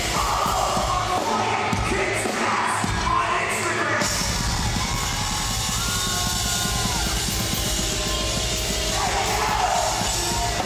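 A heavy rock band playing, with a singer's vocals over drums and electric guitar. In the middle the vocals give way to long held notes that bend in pitch, and the vocals return near the end.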